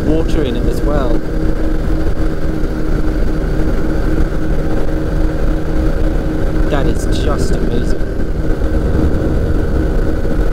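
Steady drone of a P&M Quik flexwing microlight's engine and propeller in cruise, heard from the open cockpit with heavy wind rush on the microphone. Brief snatches of a voice come just after the start and again about seven seconds in.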